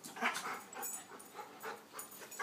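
Boston Terrier close by, making a few soft, short, irregular breathy sounds.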